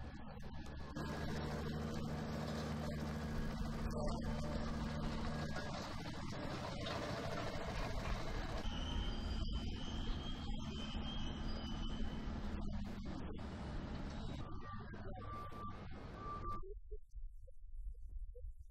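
Working container-terminal noise: heavy diesel port machinery running with a steady low hum, and a few short warning beeps near the end before the noise stops abruptly.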